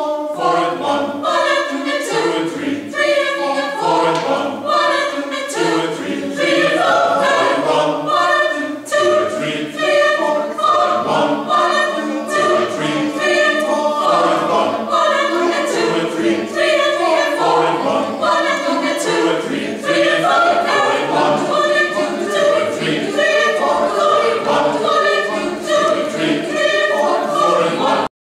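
Mixed choir of men and women singing a cappella, many voices in harmony without a break.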